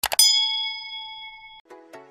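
Animated subscribe-button sound effect: two quick mouse clicks, then a bright bell ding that rings for about a second and a half and cuts off suddenly. Electronic music starts up near the end.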